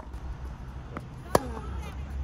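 A tennis ball struck by a racket once, a single sharp pop a little over a second in, with a fainter tick just before it.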